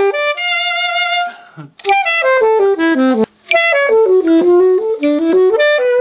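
Solo alto saxophone practising a passage of classical recital repertoire: a held note, then a run of notes stepping down to a low note about three seconds in, a brief break for breath, then more stepwise phrases.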